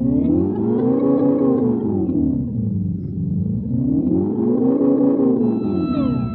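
Electric guitar through a Red Panda Raster 2 digital delay, its sustained delayed tone swept slowly up and down in pitch by the pedal's LFO modulation, about once every four seconds. Near the end, a fresh layer of higher tones enters and glides in pitch.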